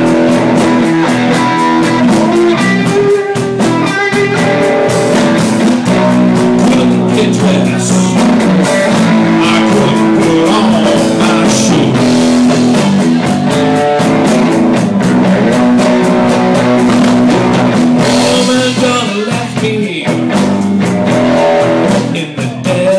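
Live blues band playing loudly: electric guitar over a drum kit, with steady rhythm and held guitar notes.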